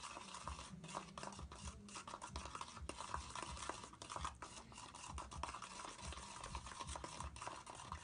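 Tint brush stirring and scraping bleach powder and peroxide developer together in a plastic mixing bowl, in quick, irregular strokes with soft knocks against the bowl.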